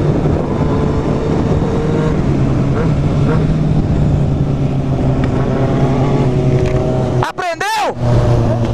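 Motorcycle engine running at a steady pitch while riding, with wind noise on the microphone. Near the end it is revved quickly, the pitch shooting up and falling back.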